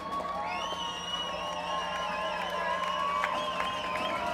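Concert audience cheering and whooping, with long wavering high calls, and clapping starting to come in near the end.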